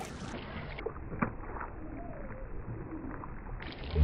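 Low-level ambient water noise at the canal edge, with a faint tick about a second in.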